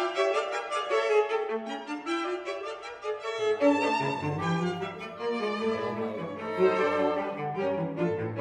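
Background music on strings: a violin melody, with a lower bowed part such as a cello coming in about halfway through.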